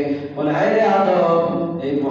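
A man chanting in a drawn-out, melodic voice, holding long notes, with a short break about a third of a second in before the next phrase.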